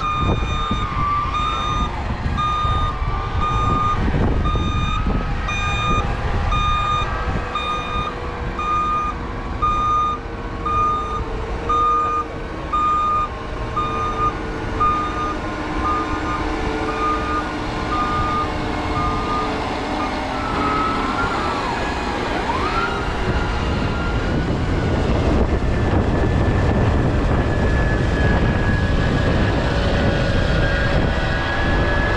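Large tractor engine running under load while pulling a cultivator, with a reversing alarm beeping about once a second over it until about two-thirds of the way through.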